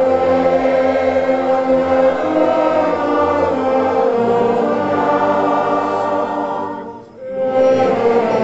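A church orchestra and congregation singing a hymn together in long held chords. The phrase fades out about seven seconds in, and after a short breath the next phrase begins.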